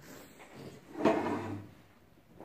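A chair shifted on the floor as someone gets up from a desk: one short scraping rush about a second in, followed by faint movement.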